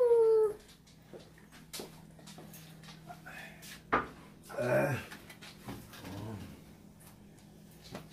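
Domestic dog whimpering in short, wavering whines, one right at the start and another about five seconds in, with a few light knocks and clicks in between.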